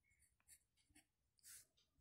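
Faint scratching of a pen writing on paper: a few short strokes.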